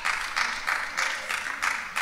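Congregation applauding, many hands clapping together.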